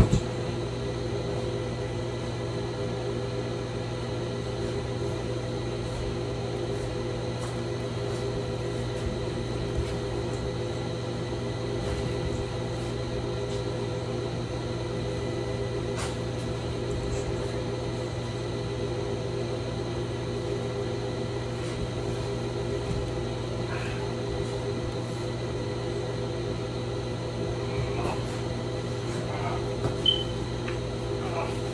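A steady mechanical hum with a low drone and several fixed tones over it. There is a single click about halfway through and a few faint knocks near the end.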